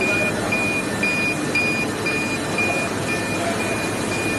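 Plastic extrusion film coating line running on test: a steady mechanical noise of rollers and motors, with a short high electronic beep repeating about twice a second.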